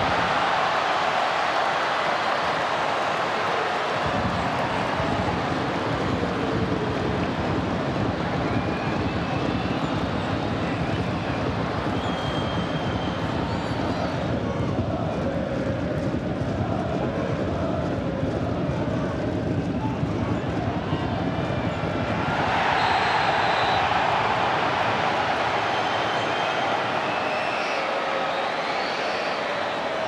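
Football stadium crowd noise, a continuous din from the stands that swells for a few seconds about two-thirds of the way through as play moves forward.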